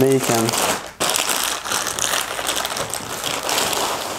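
Clear plastic packaging bag crinkling and rustling as it is handled and an item is pulled out of it, with many small irregular crackles.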